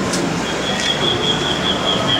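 A steady high-pitched squeal starts about half a second in and holds one pitch, over a constant background din.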